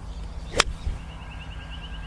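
A golf club striking a ball off the turf: one sharp, crisp click about half a second in.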